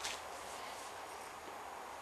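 A pause between words: a faint, steady background hiss with no distinct sound events.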